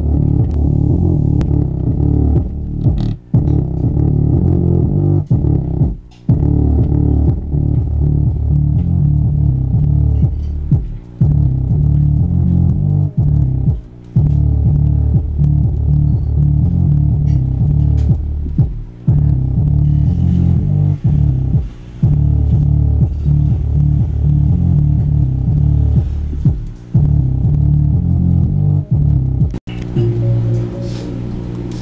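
Bass-heavy electronic music played loud through the CDR King Jargon 2.1 system's 20-watt subwoofer, a pulsing beat that is almost all bass and sounds dull and boomy, with a few brief breaks. A steady low hum runs underneath, the humming fault the owner is trying to fix.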